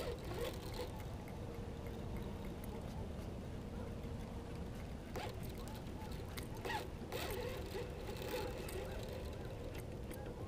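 Low steady rumble of wind on the microphone, with a few faint clicks and knocks of fishing tackle being handled in a kayak.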